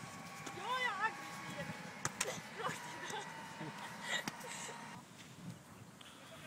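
Volleyball being passed back and forth: a few sharp smacks of hands on the ball, about two seconds in and again near four seconds, with a short distant call from a player about a second in.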